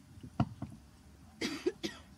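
A person coughing in a quiet space: a short sharp catch about half a second in, then a harsh cough of two or three bursts about a second and a half in.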